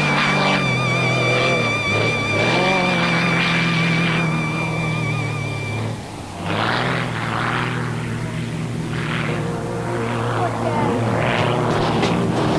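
Aerobatic single-engine propeller plane running overhead, its engine note rising and falling through the manoeuvres, mixed with background music.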